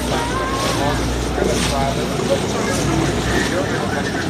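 Motorboat's engine running with a steady low drone, water and wind noise over it, and people's voices talking indistinctly in the background.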